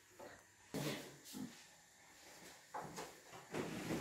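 Quiet kitchen with a few faint, soft knocks and rustles as balls of dough are handled and set into an oiled metal baking tray.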